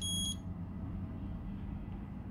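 A single short, high electronic beep from the QianLi iCopy Plus battery programmer as its write button is pressed, then a faint steady low hum.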